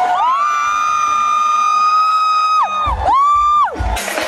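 Live calypso performance: one high note, held for about two and a half seconds with a scoop up at the start and a fall-off at the end, then a second, shorter note that rises, holds and falls away. Two low thuds come near the end.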